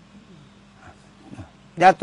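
A short pause in a man's talk in Thai: a steady low hum and a few faint short sounds, then his voice starts again near the end.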